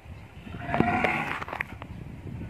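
A white zebu cow mooing once, head raised: a single call of about a second starting about half a second in. A few sharp clicks sound around it.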